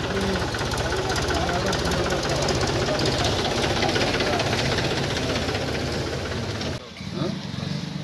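An engine idling with a fast, even chugging, under overlapping indistinct voices; the engine sound cuts off abruptly near the end.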